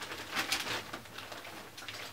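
A shopping bag rustling and crackling as it is searched through, busiest in the first second.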